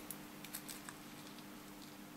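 Faint crinkling and a few soft ticks of thin metallised polyester capacitor film being unrolled between fingertips.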